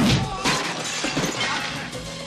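Glass shattering in a fight, with a heavy hit right at the start and another about half a second in, over background music.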